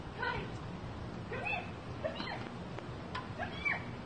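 A small animal crying out in short calls, about four of them spread roughly a second apart, each bending up and down in pitch.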